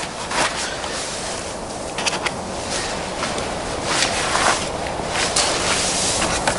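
Steady outdoor background hiss with scattered short rustles and scrapes of cardboard packaging being handled, plus footsteps.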